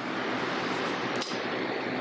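A steady, even rushing hiss with no clear pitch.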